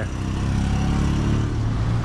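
A motor vehicle engine running close by with a steady low hum, over the general noise of street traffic.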